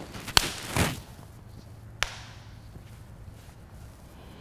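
Bare feet stepping back on a yoga mat: a sharp tap, a brief swish, then a second sharp tap about two seconds in.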